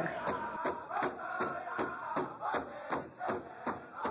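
Music with a steady, fast drumbeat under chanting voices.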